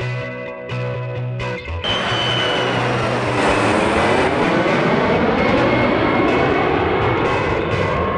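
Sustained musical notes, then about two seconds in a jet airliner on landing approach passes low overhead. Its engines make a loud rush that builds, with a high whine that drops slightly in pitch and a whooshing that sweeps up and down as it goes over.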